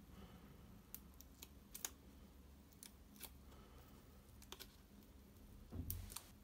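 Faint, scattered clicks and ticks of a fingernail picking the release-paper backings off small foam adhesive dots (mini dimensionals) stuck on card, with a soft thump near the end.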